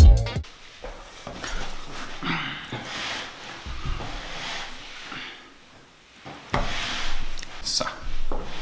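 Music cut off suddenly about half a second in, then faint, scattered rustling and rubbing of a person moving at a table, with a few louder hissy rubs.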